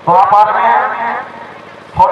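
A man's voice: the match commentator gives one drawn-out call lasting about a second near the start, with a couple of faint clicks under it.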